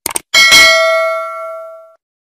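Subscribe-animation sound effect: a quick double mouse click, then a bell ding that rings and fades out over about a second and a half.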